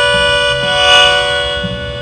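Melodica holding the song's last sustained chord, with a small change in the chord partway through, fading out toward the end as the song finishes.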